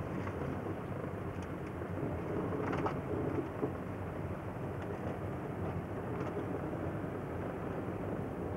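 Inside a car's cabin while driving slowly over a hail-covered road: a steady low rumble of engine and tyres, with a few faint clicks and knocks.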